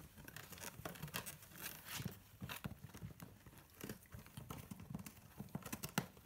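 Cocker spaniel puppies scrabbling at a cardboard box: faint irregular scratching, tapping and rustling of cardboard.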